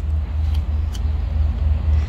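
A steady low rumble, pulsing unevenly, with a couple of faint clicks about half a second and a second in.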